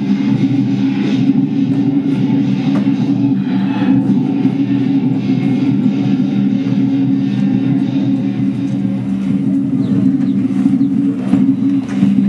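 Lion dance percussion: a drum with a crash of cymbals about every second and a bit, over a loud, steady low drone.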